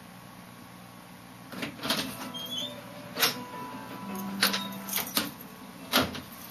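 A series of sharp knocks and clicks of objects being handled close by, starting about a second and a half in, over a low steady hum.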